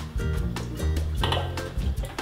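Background music with a moving bass line, with a few faint clinks of a metal saucepan and utensil.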